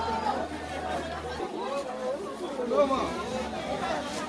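Indistinct voices of people talking and chattering, with no other sound standing out.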